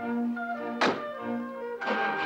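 A car door slammed shut once, about a second in, over orchestral background music.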